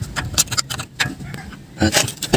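A few light metallic clicks and clinks at uneven intervals as metal engine parts and bolts are handled and set in place during a timing-side rebuild.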